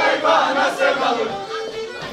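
Dancers shouting together in a loud outburst at the start, over a Black Sea kemençe that keeps playing a horon tune underneath.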